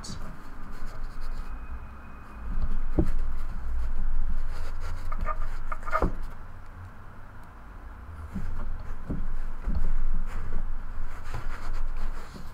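Stacks of trading cards being handled and set down on a cloth-covered table: a few soft knocks and stretches of low rumbling handling noise.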